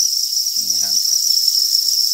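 A dense chorus of farmed crickets chirping together in their rearing pen: one continuous, steady, high-pitched trill with no pauses.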